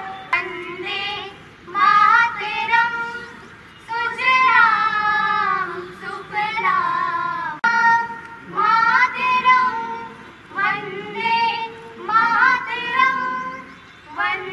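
A high voice singing a melody, in phrases of a second or two with held, wavering notes and short breaks between them.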